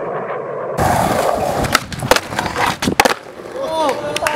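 Skateboard wheels rolling on concrete, starting suddenly about a second in, with a run of sharp pops and clacks from the board.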